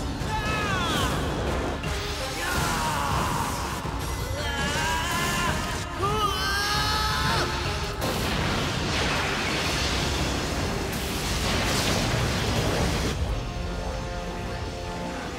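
Animated-cartoon soundtrack of a power-up sequence: dramatic music layered with energy sound effects and booms, with gliding pitched sounds in the first half and a denser rush of effects from about eight seconds in.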